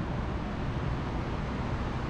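Steady background hiss with a low rumble, with no distinct event: the room tone of a large hall.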